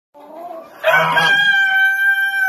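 Rooster crowing: a fainter call first, then about a second in a loud, harsh start that settles into one long held note.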